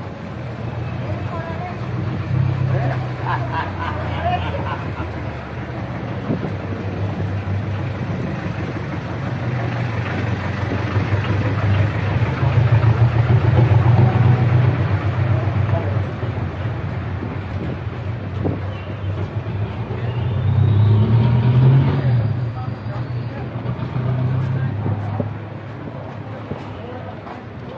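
Street traffic: motor vehicle engines running, with vehicles passing close and the sound swelling loudest around the middle and again near the end.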